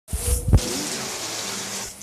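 Steady hiss of heavy rain falling. A couple of low thumps come in the first half second, and the hiss drops away abruptly just before the end.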